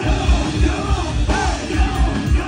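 Live rock band playing loud, with electric bass, drums and vocals; the full band comes in at the very start with a heavy pulsing low end.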